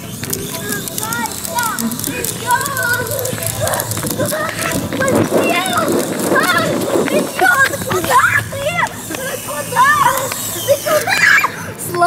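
Excited shouts and calls from a young child, with other voices around.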